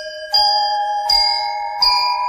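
Instrumental opening of a devotional song: bell-like chimes struck in a slow melody, a new note about every three-quarters of a second, each one ringing on under the next.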